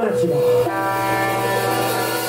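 Electric guitar ringing through its amplifier: a held chord of several steady tones that settles in about half a second in and sustains without drums.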